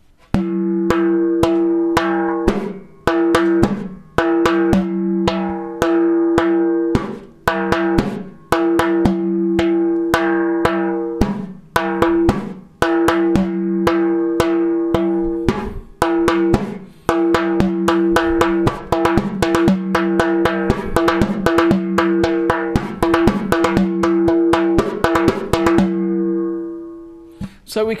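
Frame drum played by hand in a repeating rhythm. Open, slow notes ring on, mixed with quick runs of faster strokes. The phrase repeats about every four seconds, and the last note rings out and fades near the end.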